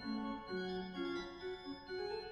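Chamber organ playing solo in Baroque style: steady, held notes with a moving melody line, the notes changing every half second or so.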